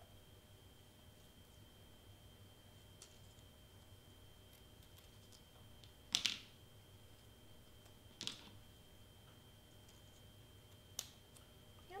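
Small scissors snipping through cardstock: three short cuts, about six, eight and eleven seconds in, the first the loudest, over quiet room tone with a faint steady high tone.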